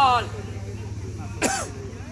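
Men's voices: a loud call falls in pitch and trails off at the start, then a short, sharp, cough-like cry comes about one and a half seconds in, over a steady low hum.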